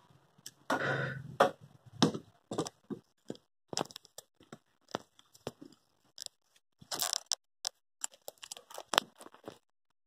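Scattered light clicks, knocks and scrapes of handling, as power tools and their cords are shifted about on a wooden floor. No tool is running.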